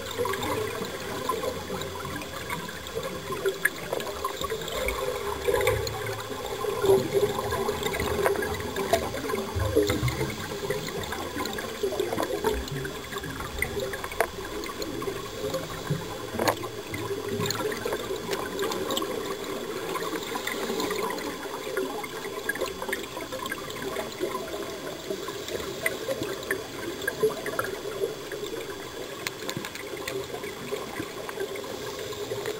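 Underwater bubbling and gurgling from scuba divers' exhaled air, swelling and easing every few seconds.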